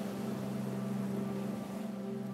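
Soft ambient background music: a steady held drone of several low sustained tones, with no beat.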